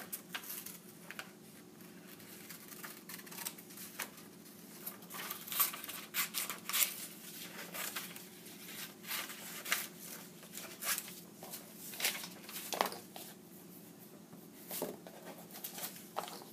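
Scissors cutting out a shape from a sheet of paper: a run of short, irregular snips, with the paper rustling as it is turned between cuts.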